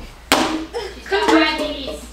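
A sharp smack of a hand slapping a tabletop about a third of a second in, followed by a person's loud voice.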